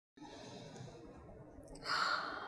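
Faint room hiss, then near the end a woman's soft breathy sigh.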